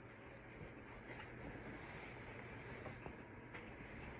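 Quiet room tone: a faint, steady low hum with a couple of soft clicks in the second half.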